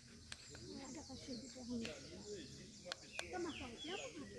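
Faint background chatter of several distant voices, with short high bird chirps and a few light taps.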